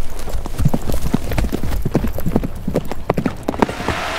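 Hoofbeats of a show-jumping horse ridden on the sand footing of an indoor arena, a quick, uneven run of thuds that stops near the end.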